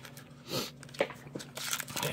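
Plastic-foil wrapper of a Topps Allen and Ginter trading card pack being torn open by hand: scattered crinkles and small tearing crackles, thickening near the end.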